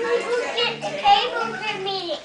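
Children's voices: high-pitched vocalizing and chatter with no clear words.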